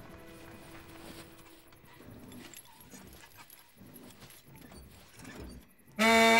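Faint, quiet film soundtrack: soft music with scattered light sound effects.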